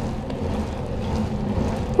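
Wind buffeting the microphone of a camera on a moving bicycle, over steady road noise from the tyres rolling on wet pavement.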